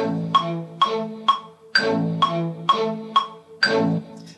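DAW metronome clicking about twice a second over a slow-attack synth string section. The strings swell in slightly after each click, so the metronome seems to be rushing ahead of the beat, though it is the slow attack that makes the strings late.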